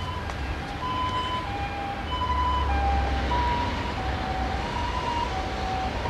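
Two-tone emergency-vehicle siren alternating between a higher and a lower note about every half second, over a low, steady traffic rumble.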